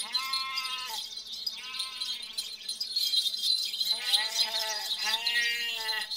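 A herd of goats bleating, several wavering bleats overlapping, in three bouts: at the start, about two seconds in, and again from about four seconds on.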